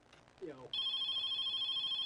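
A call-in telephone ringing, starting about two-thirds of a second in and going on without a break. It is a high, warbling ring and the loudest sound here. It is one of the nonstop incoming calls whose ringing the host says he can't stop.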